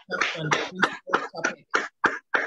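A woman coughing in a fit of short, harsh coughs, about three a second.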